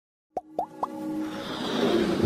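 Electronic logo-intro sting: three quick rising pops about a quarter second apart, followed by a building musical swell.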